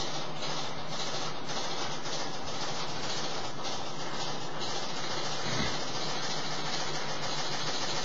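Washing machine running with an unbalanced load, a steady mechanical noise.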